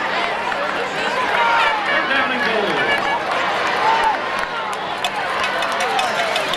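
Crowd of spectators at a high school football game, many voices talking and calling out over one another.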